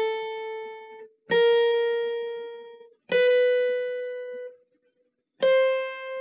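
Acoustic guitar's high E string played one note at a time, fretted at the 5th, 6th, 7th and 8th frets: four single picked notes, each left to ring out and fade before the next, stepping up a semitone each time. It is a slow one-finger-per-fret chromatic exercise.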